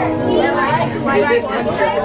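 Several people talking at once over background music.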